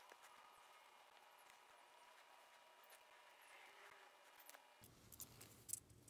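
Near silence: faint room tone with a thin steady hum that stops about five seconds in, then a few soft ticks near the end.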